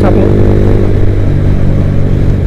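Honda motorcycle engine running steadily while riding at road speed, heard from the rider's seat, with road and wind noise over it.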